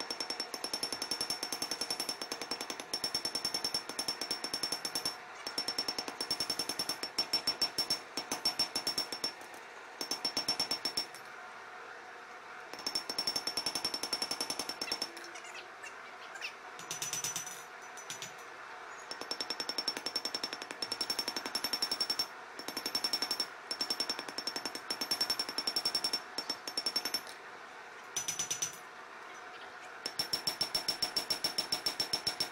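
Hammer striking a red-hot spring-steel knife blade on an anvil in fast runs of blows, the anvil ringing high with each run, broken by a few short pauses.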